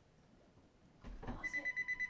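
A telephone starts to ring about one and a half seconds in: a high electronic trill, one steady tone pulsing rapidly. A soft knock comes just before it.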